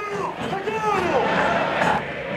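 A man shouting instructions on the touchline, "¡Sacalo, sacalo!", with stadium crowd noise behind him that swells in the second half.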